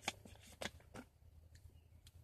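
A few faint, sharp clicks and crinkles from a plastic drink bottle being picked up and handled, about five or six spread over two seconds.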